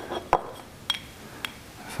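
A few light clinks and taps of a small porcelain paint palette being picked up and handled with a brush, the first clink the loudest.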